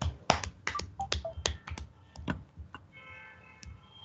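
Computer keyboard typing: a quick run of a dozen or so sharp key clicks over the first few seconds. After that comes a faint steady whine made of several tones near the end.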